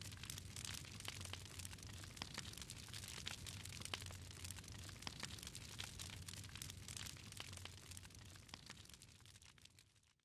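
Faint crackling of a wood fire, many small irregular pops over a low rumble, fading out near the end.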